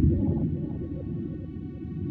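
Muffled underwater rumble with bubbles gurgling up, thickest at the start and thinning out over the next second or so, over a steady low drone.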